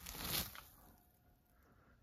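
Hot water flung into −14 degree air, flashing into a cloud of steam and ice crystals: a brief hissing rush that fades away within about half a second.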